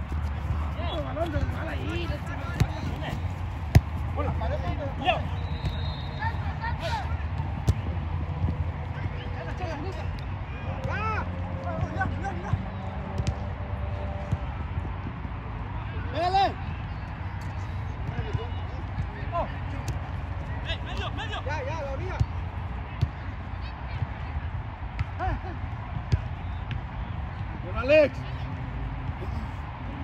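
Players' shouts and calls across a soccer pitch, scattered and unclear, over a steady low rumble, with a few sharp thuds of the ball being kicked, the loudest about four seconds in.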